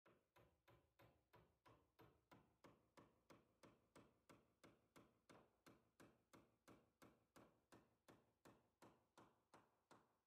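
Faint, steady hammer blows, about three a second, a steel hammer driving a long finish nail into hardwood, each strike with a brief metallic ring.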